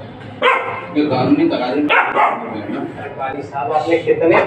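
A puppy barking in a quick series of short, sharp yaps while scuffling with a cat.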